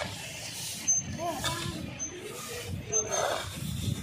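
Stick and grass hand brooms scraping and sweeping dust and litter across a paved road, with people's voices in the background.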